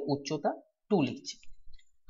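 A voice speaking Bengali in short broken phrases while working through a maths problem, with a few faint clicks in the pauses.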